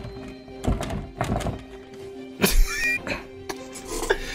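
Several dull thuds and knocks, the loudest about two and a half seconds in, over a low, held background-music drone.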